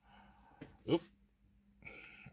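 A man's short exclamation, 'oop', about a second in, rising in pitch; otherwise faint room tone.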